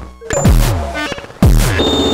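BugBrand and Scrotum Lab modular synthesizer playing electronic percussion: two drum-like hits with a fast falling pitch, about a second apart, among short bleeps and ringing metallic tones.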